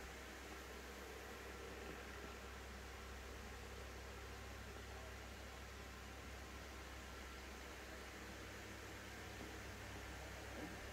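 Faint steady hiss with a low hum underneath and no distinct event: background noise.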